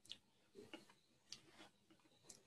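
Faint, evenly spaced clicks, a little under two a second, against near silence.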